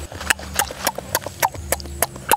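Wet clicking and smacking of eating, sharp and evenly spaced at about three or four a second.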